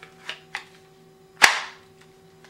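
A Chiappa Rhino revolver pushed into a single-retention Kydex holster: a couple of faint ticks, then one sharp click about one and a half seconds in as the holster snaps shut around the gun. The click is the sign that the holster is gripping and retaining the revolver.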